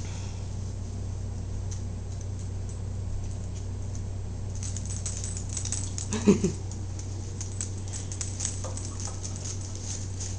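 Small dogs' claws clicking and pattering on a hard floor, a rapid irregular run of light ticks starting about halfway through, over a steady low hum. A short laugh is the loudest sound, a little after the middle.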